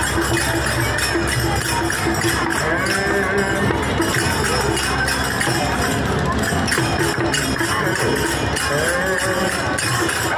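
Devotional procession music with a steady beat of jingling percussion and voices singing, over a crowd's chatter.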